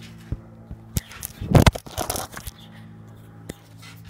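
Small balls dropping onto a trampoline mat: a few light taps, then a louder rustling thump about a second and a half in, mixed with phone handling noise. A steady low hum runs underneath.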